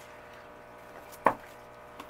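Tarot cards being set down on the table: one sharp tap about a second in, otherwise quiet room tone.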